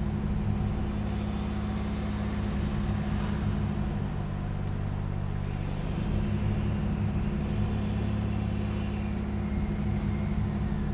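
Contemporary concert music: sustained low droning chords from a free-reed button accordion, with piano and electronics, shifting pitch a few times. Faint high gliding tones enter about six seconds in.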